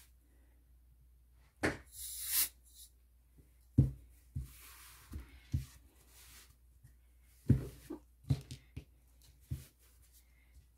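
Canned air hissing in short bursts through its thin extension straw to push alcohol ink across a resin surface: one strong burst about two seconds in and a fainter one around five seconds. Sharp light knocks and taps from handling come in between.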